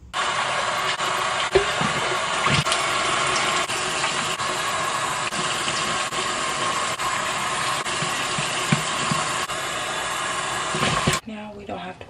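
Tap water running steadily from a bathroom faucet into the sink while a baby bottle is washed under it, with a few light knocks from the bottle and brush. The water cuts off abruptly near the end.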